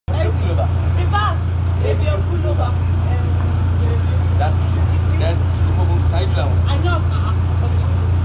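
Indistinct voices talking over a loud, steady low hum that does not change.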